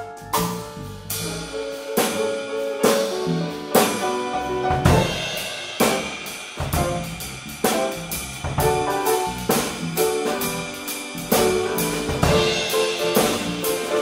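Live groove jam on a drum kit, grand piano and electric bass, with steady drum strikes and pitched piano and bass lines throughout.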